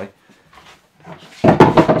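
A short, loud clatter of knocks starting about a second and a half in, as a sliding chop saw (mitre saw) is picked up and handled.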